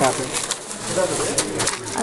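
Plastic jewellery packaging crinkling and rustling in the hands as the packets are handled and swapped, a scatter of sharp rustles.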